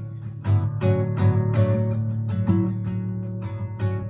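Nylon-string classical guitar played fingerstyle: an instrumental passage of plucked chords and single notes, several attacks a second over ringing bass notes.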